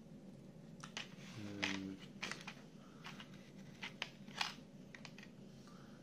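Clicks and crackles of a thin clear plastic blister tray being handled as small black plastic model parts are pulled out of it, about ten sharp, irregular clicks.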